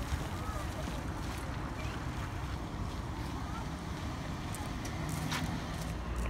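Wind buffeting a phone microphone outdoors: a steady, rumbling hiss with no clear event in it.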